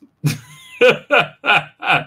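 A man laughing: a run of about five short voiced bursts, roughly three a second, starting a quarter second in.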